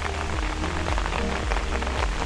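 Steady rain falling, an even hiss with no distinct drops standing out.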